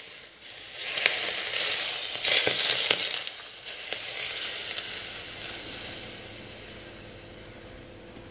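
Smoking-hot sunflower oil poured onto a heap of grated garlic, ground coriander and chili on raw cabbage, sizzling and crackling. It sizzles hard in surges over the first three seconds, then fades to a faint hiss as the oil cools on the vegetables.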